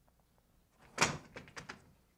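A sharp knock about a second in, followed by three or four lighter, quick clicks.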